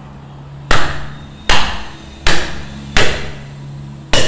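A meat cleaver chopping through a raw bone-in leg of meat on a wooden stump chopping block: four heavy chops about three-quarters of a second apart, each a sharp hit that dies away quickly.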